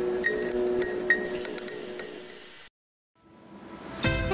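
Logo-intro sound design: sustained synth tones with scattered bright sparkles, cutting off suddenly about two-thirds of the way through. After a brief silence, a rising whoosh swells toward the end.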